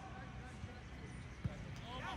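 Quiet open-air background of a soccer match in play: faint, even field noise with a single soft knock about one and a half seconds in.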